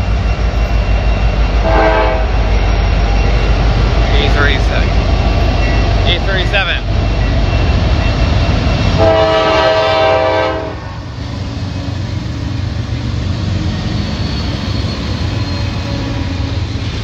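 Freight train passing at close range, its mid-train diesel locomotives (an EMD SD70ACe and a GE ES44AC) giving a heavy steady rumble that drops away about 11 seconds in, with a few brief high squeals. The approaching train's Nathan K5LA air horn sounds a short toot about two seconds in and a longer blast of about two seconds near the middle.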